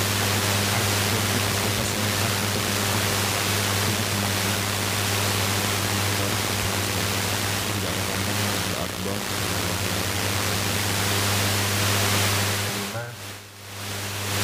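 Loud, steady low electrical hum with a hiss over it, from the microphone and sound system. It drops away briefly near the end.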